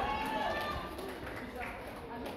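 Indistinct people talking, fading into quieter background chatter.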